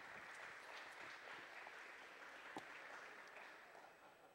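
Faint applause from an audience, fading out near the end.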